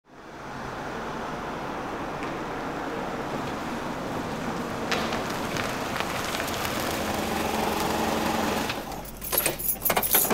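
A car running as it approaches and pulls in, growing gradually louder, then going quiet about nine seconds in. Keys jangle near the end.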